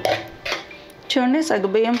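Steel spoon knocking and scraping against a stainless steel pot as thick cooked sago is stirred, two strokes in the first half second. A voice starts talking about a second in.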